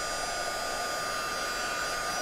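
Embossing heat tool blowing steadily, a hot-air whir with a steady high whine, melting white embossing powder on watercolor card.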